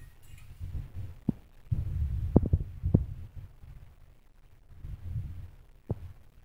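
Muffled low thumps and rubbing of a long cotton turban cloth being pulled and wrapped close to the microphone. A few sharp clicks come about a second in, a cluster between two and three seconds in, and one more near the end.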